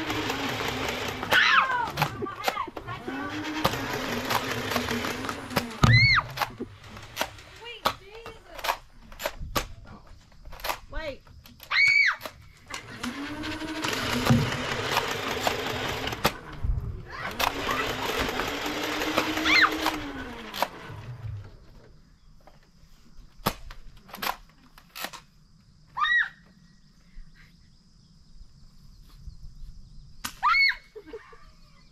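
Motorized toy blasters firing long full-auto bursts, four times in the first twenty seconds: each burst is a few seconds of rapid shots over a motor hum that spins up and winds down. Sharp knocks of hits, and short cries, are scattered between the bursts, and the last third is quieter.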